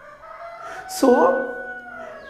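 A long call held at a steady pitch for nearly two seconds, rising slightly, with a man's single spoken word about a second in.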